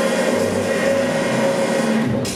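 Electronic dance music played loud over a festival sound system during a breakdown: sustained synth chords with no drums, just before the percussion comes back in.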